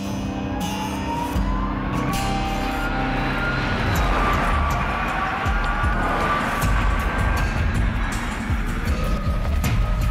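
Background music, with the Nio EP9 electric supercar's motors whining as it drives by on track. The whine rises in pitch over the first few seconds as the car speeds up, over a rumble of tyre and wind noise.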